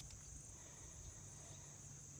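Faint, steady, high-pitched chorus of insects, such as crickets or katydids, over a low background hum.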